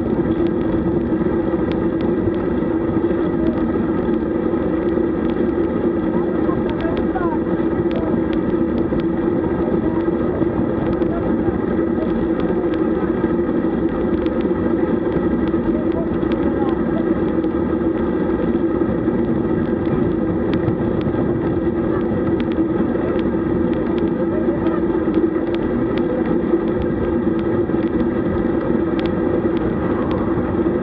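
Steady rush of wind and road noise picked up by a bike-mounted action camera riding along a road, with a constant low hum throughout.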